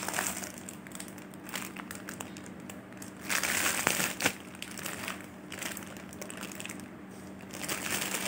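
Plastic Maggi instant-noodle packets crinkling as they are handled, loudest in a dense burst about three to four seconds in.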